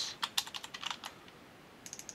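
Computer keyboard typing: a quick run of keystrokes in the first second, a short pause, then a few more keystrokes near the end.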